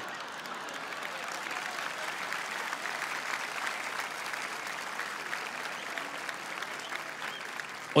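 Audience applauding: steady, even clapping from a large crowd, cheering the end of a comedy routine.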